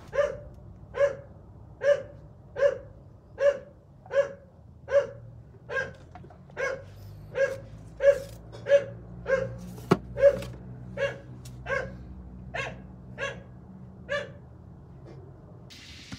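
A pet dog barking over and over at a steady pace, a little more than one bark a second, stopping shortly before the end. There is one sharp click partway through.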